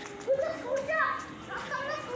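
Children's high-pitched voices calling and shouting in play, several short calls one after another.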